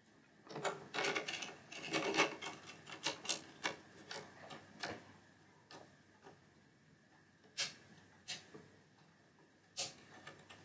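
Spring-metal wiper fingers of a 1972 Williams Honey pinball match unit being turned by hand over its contact board, clicking as they snap across the contacts. The clicks come in a quick, uneven run for the first few seconds, then singly about once a second. The fingers are being checked for spring tension and for riding flat on the contacts after being bent.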